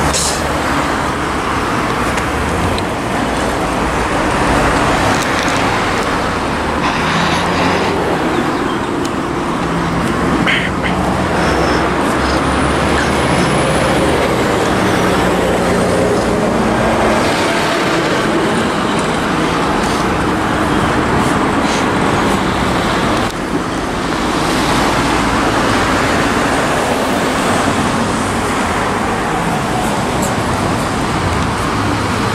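Steady road traffic close by: cars, vans and a truck passing one after another, with tyre noise and engine hum that swell and fade as each goes by.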